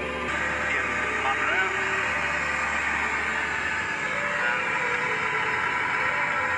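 A radio playing in a truck cab: indistinct voices with a little music under a steady hiss. A low steady hum fades out about four seconds in.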